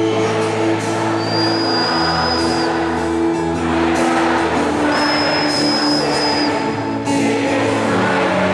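Live worship band music from an arena concert, heard from among the crowd: acoustic guitar and band, with singing. A thin high held tone sounds twice, about a second in and again around five seconds.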